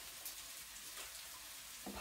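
Faint, steady sizzle of courgettes, onions, garlic and chilli frying in coconut oil in a pan.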